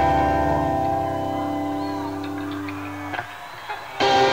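Live rock band's sustained electric guitar and bass chord ringing out and fading for about three seconds, then stopping abruptly. A short near-silent break with a couple of faint clicks follows before the band comes back in at the very end.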